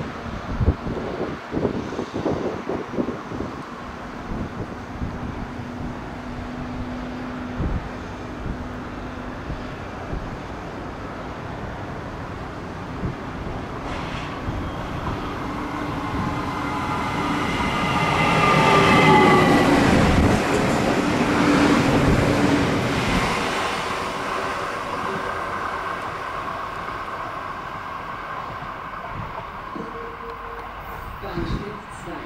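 Train wheels clicking over rail joints in the first few seconds, then an S-Bahn electric train running in. It is loudest about two-thirds through, with several whining tones sliding down in pitch as it slows, and then it fades.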